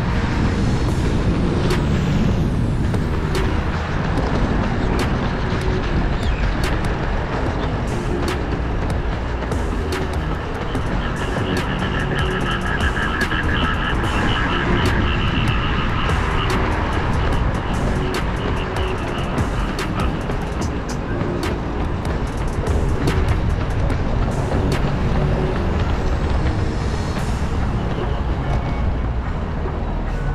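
Steady wind rumble on a moving microphone that is keeping pace with runners, with background music underneath.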